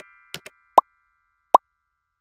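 Motion-graphics sound effects: a couple of soft clicks, then two loud, short pops about three-quarters of a second apart.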